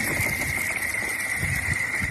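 Thin, newly formed lake ice singing as thrown chunks of ice skid across it: eerie, sliding, chirping tones over a steady high ringing tone.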